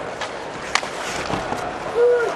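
Ice hockey arena sound: steady crowd noise with a few sharp clacks of sticks and puck as players fight for the puck along the boards, the loudest about three-quarters of a second in.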